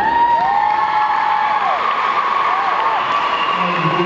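Audience applauding and cheering, with high, held whoops from the crowd: a long one in the first couple of seconds and two short ones a little later.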